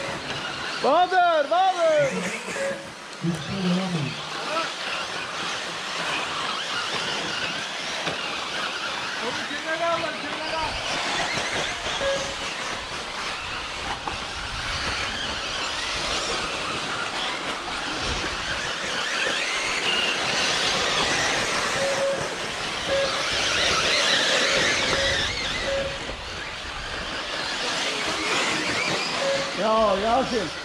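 Electric 1/8-scale RC off-road buggies racing on a dirt track: a steady hiss and whine of motors and tyres that swells and fades as the cars pass, with a man's voice briefly near the start.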